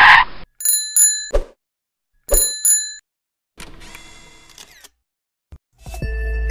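Bicycle bell rung in two quick double rings, about a second and a half apart, each ring bright and metallic, after a short burst of noise at the start.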